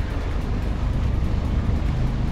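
Jet ski engines running steadily as the watercraft cruise across the water, a low drone.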